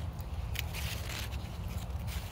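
Tomato leaves and stems rustling, with a few short crisp crackles as the leaves are stripped off by hand, over a low steady rumble.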